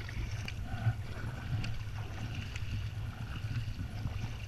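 Sea water splashing and sloshing against a sit-on-top kayak's hull and paddle blades as it is paddled through light chop, over a steady low rumble.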